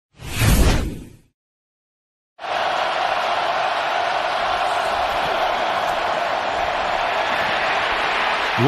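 A loud whoosh sound effect lasting about a second, then a second of silence. After that comes a steady stadium crowd noise.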